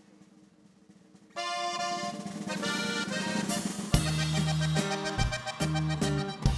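Cantabella Rústica button accordion playing a song's opening melody alone, entering suddenly about a second and a half in after a near-silent moment. About four seconds in, the norteño band's bass and drums come in beneath it.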